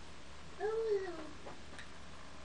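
A cat meowing once: a short call that rises and falls in pitch, about half a second in, followed by a couple of faint ticks.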